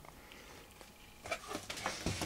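Quiet room tone, then from just over a second in a few short knocks and scrapes as the wooden amplifier case is handled and tipped up on the workbench.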